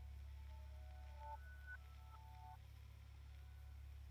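Near silence: faint background music of a few soft held notes stepping in pitch, over a steady low hum.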